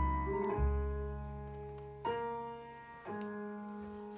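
Slow music of plucked double bass with piano: four deep notes or chords, each left to ring and fade before the next.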